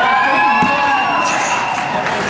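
Hockey players shouting and cheering on the ice, over a steady high-pitched tone that fades out about halfway through.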